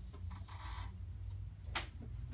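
Side-lying lumbar chiropractic adjustment: a short rustle as the patient is positioned on the treatment table, then one sharp crack near the end as the thrust is delivered.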